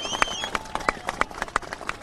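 Many sharp, irregular clicks from a tightly packed crowd, several a second, typical of press camera shutters firing, with a faint high tone fading in the first half second.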